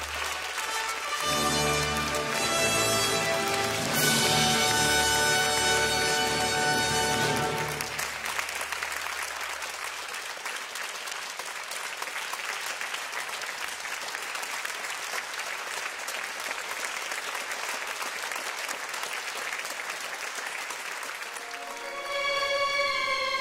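Symphony orchestra playing a short run of held chords, loudest about four seconds in, fading out by about ten seconds; steady applause fills the rest.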